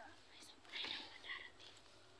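A person whispering quietly, about a second in.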